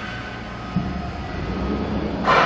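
Wulftec WSML-150-B stretch wrapper's turntable turning under a loaded pallet: a steady low mechanical rumble with a faint steady tone above it, and a short knock about a third of the way in.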